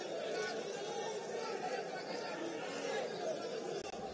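Steady background chatter of a small stadium crowd, indistinct voices and calls with no single voice standing out.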